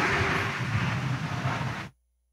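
Steady noisy background ambience with faint voices in it, cutting off abruptly to silence near the end.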